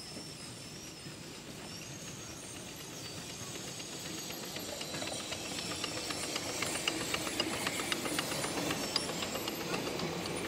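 A miniature steam locomotive, a GCR 8K-class 2-8-0, approaches and passes hauling a train of passenger coaches, growing steadily louder. It carries a hiss of steam, and from about five seconds in there is a rapid clicking and rattling of wheels on the track.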